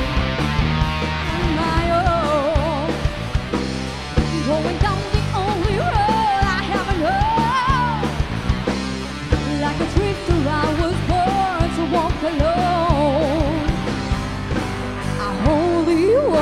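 Rock song with a woman singing a high melody over electric guitar, bass and a steady drum beat.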